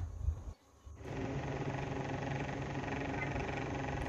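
A steady mechanical hum with a hiss, starting after a brief near-silent gap about a second in.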